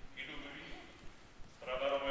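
A man's speaking voice reading aloud, broken by a pause of about a second in the middle.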